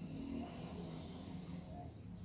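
A steady low background hum with faint high chirping above it.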